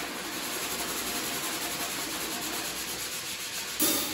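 Steady scraping and rubbing noise from a free-improvising cello, drum and saxophone trio using extended techniques, with no clear notes, broken near the end by a sudden loud drum hit.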